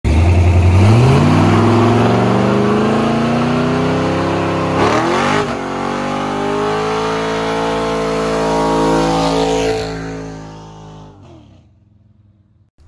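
LS-swapped V8 in a squarebody Chevrolet C10 pickup revving hard and holding high revs during a burnout, the rear tyres spinning. The engine note climbs in the first second or so, rises and drops sharply about five seconds in, holds steady, then fades out near the end.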